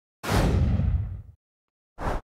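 A whooshing intro sound effect with a low boom for a logo reveal: it starts sharply and dies away over about a second, its high end fading first. A second short burst begins right at the end.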